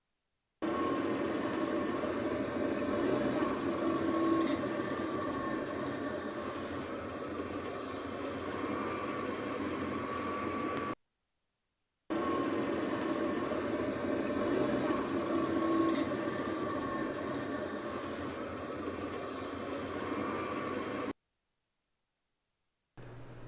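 Road traffic and engine noise heard from inside a moving car's cabin: a steady drone with a few held engine tones. The same ten-second stretch plays twice, with a brief silence between.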